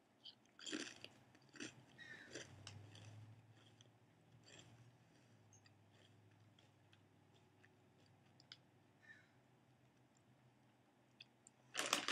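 Faint crunching of a wavy Lay's potato chip being bitten and chewed, with crisp crunches thickest in the first few seconds that thin out to soft, sparse chewing. A short, louder rustle comes near the end.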